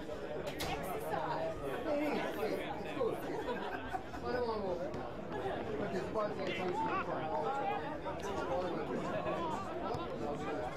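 Many voices overlapping at an Australian rules football game, players and spectators calling and chatting over one another with no single voice clear. A single sharp knock comes about half a second in.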